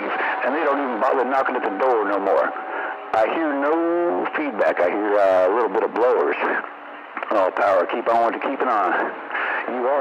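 Voices talking over a radio, heard through a receiver's speaker with a narrow, muffled sound and nothing in the high treble. A faint steady whistle sits under the voices for the first few seconds.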